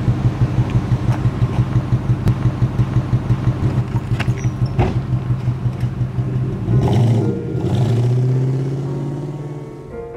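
A car engine running with a low, evenly pulsing hum, revved twice about seven seconds in, then fading steadily away.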